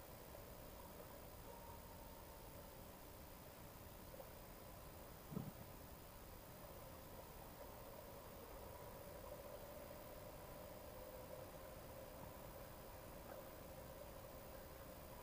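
Near silence: a faint steady hum, with one soft low thump about five seconds in.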